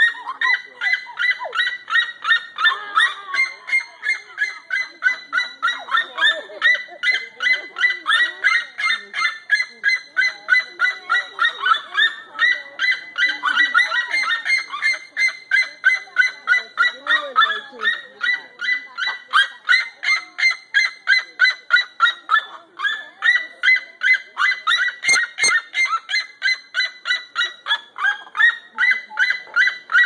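Crested seriemas screaming at each other in a loud, continuous chorus of rapid yelping calls, about three a second, with only brief pauses.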